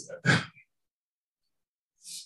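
A man's brief breathy vocal sound, about a third of a second long, near the start.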